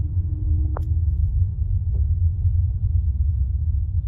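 Steady low rumble of a vehicle moving slowly along a road, heard from the filming car.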